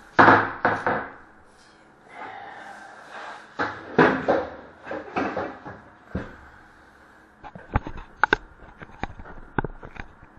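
Handling knocks and bumps as things are moved about close to the microphone, with a loud bump right at the start, more around the middle, and a run of sharp clicks near the end.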